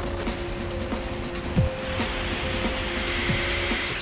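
Nammo hybrid rocket motor (hydrogen peroxide oxidizer with solid fuel) firing on a test stand: a steady rushing noise that holds level throughout, with background music underneath.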